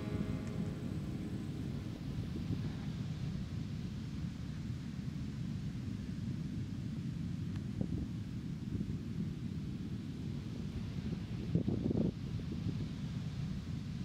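Wind rumbling on the microphone outdoors as a steady low noise, after the last notes of the song fade away in the first second. There is a stronger gust shortly before the end.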